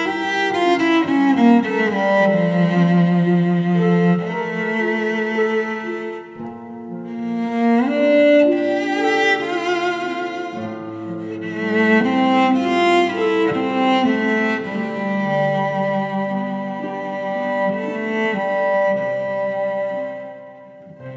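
Slow, tender instrumental ballad on cello and string ensemble. Long bowed notes are held with a wavering vibrato, ease off about six seconds in, then swell again.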